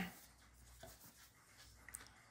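Near silence, with the faint rub of a hand smoothing a sheet of paper flat on a table and a small click near the end.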